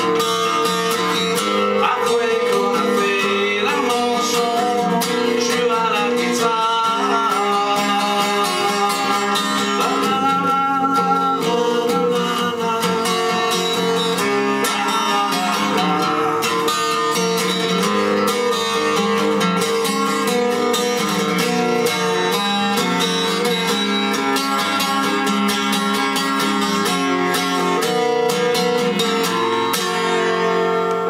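Acoustic guitar played solo at a steady level, an instrumental passage of the song with no words sung.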